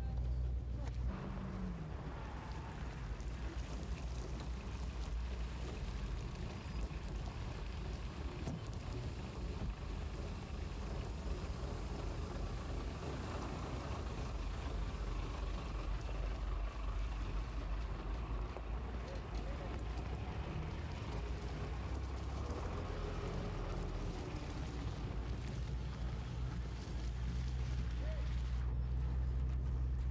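Armoured personnel carrier engines running, a steady low rumble, with indistinct voices underneath.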